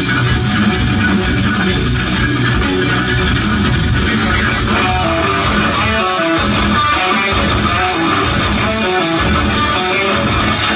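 Extended-range electric guitar played live with fast, busy picking. From about five seconds in, rapid separate notes step up and down in the middle register over a thinner low end.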